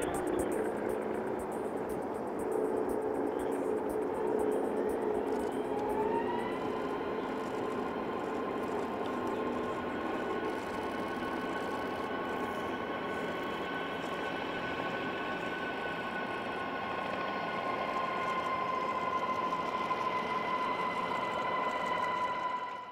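Solar Impulse HB-SIA's four electric propeller motors whining during its takeoff roll and climb-out: a lower hum at first, then a whine that rises in pitch about six seconds in and holds steady, over a wash of air and motion noise.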